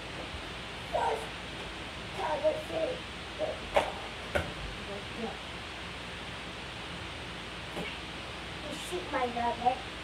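Short, indistinct bits of talk from people in a small room, over a steady hiss, with two sharp clicks near the middle.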